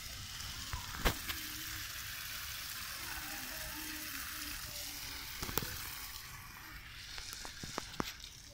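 Water spraying from a garden hose: a steady hiss, with a couple of sharp clicks. The hiss thins out after about six seconds.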